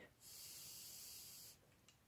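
Air blown softly out through the lips: a faint, steady hiss lasting just over a second.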